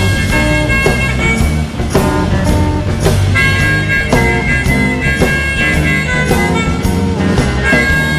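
Live blues-rock band playing an instrumental passage, drums, bass and guitar under a harmonica playing long held notes.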